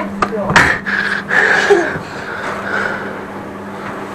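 Indistinct voices over a steady low hum, with a few sharp knocks in the first second and a half.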